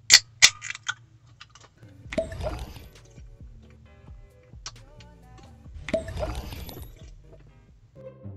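An aluminium soda can of Mountain Dew Baja Blast cracked open by its pull tab: two sharp clicks right at the start, then a short fizz. Two longer noisy sounds follow about four seconds apart, all over quiet background music.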